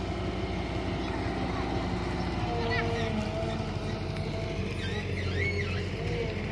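A diesel excavator's engine running with a steady low drone, with faint children's voices calling over it.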